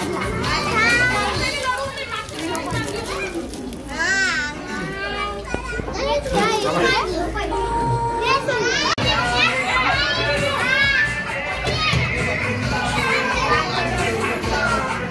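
Many children's voices shouting and chattering excitedly at once, high-pitched and overlapping.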